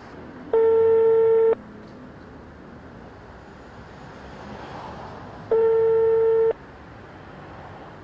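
A mobile phone playing the ringback tone of an outgoing call: two steady one-second beeps about five seconds apart, meaning the line is ringing at the other end and the call has not yet been answered.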